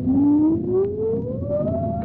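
A radio sound-effect tone for a rocket readying for launch, rising steadily and smoothly in pitch over a low rumble.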